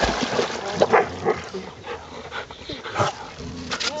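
A dog giving several short cries while being lowered into water, with a wash of splashing water at the start.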